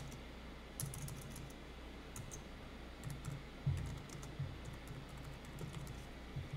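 Computer keyboard being typed on: quiet, irregular runs of key clicks as a name is entered letter by letter.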